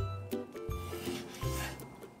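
Kitchen knife slicing raw chicken breast on a wooden cutting board: a few short rasping cutting strokes. Background music with held notes and a bass line plays under it.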